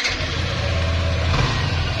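Yamaha NMAX scooter's single-cylinder engine running at idle just after starting, with a slight rise about halfway through. It keeps running with the side stand up, showing that the new side-stand kill switch allows the engine to run.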